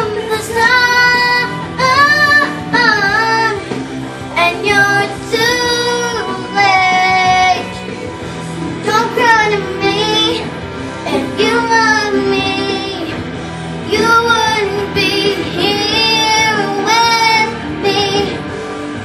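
A young girl singing with held notes that slide and bend in pitch, phrase after phrase, over a steadier music accompaniment.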